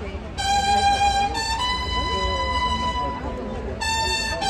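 Recorded flamenco-style music played over stage loudspeakers, with long held melodic notes of a voice and violin over a steady low rumble.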